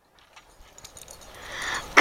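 Faint, scattered patter and rustling of a dog running across grass toward the microphone, growing louder near the end as it arrives.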